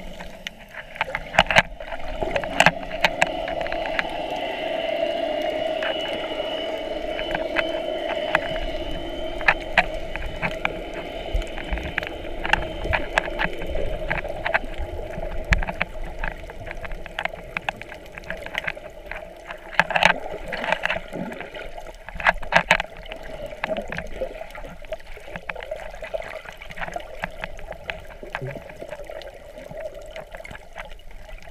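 Underwater sound picked up through a camera's waterproof housing: a steady drone that swells a few seconds in and eases after the middle, with scattered sharp clicks and knocks throughout, the loudest about twenty and twenty-three seconds in.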